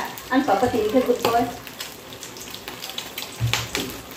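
Food frying in a pan on the stove: a steady sizzle with scattered small crackles.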